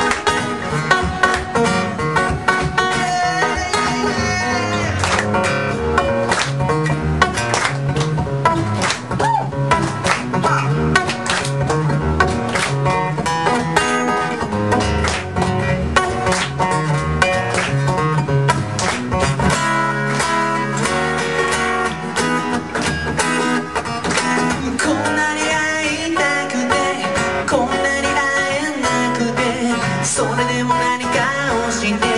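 Acoustic guitar playing an instrumental passage of a song with no singing: a busy run of picked notes with frequent sharp attacks.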